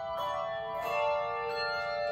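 Handbell choir ringing: two chords of bronze handbells struck less than a second apart, each ringing on and overlapping the last.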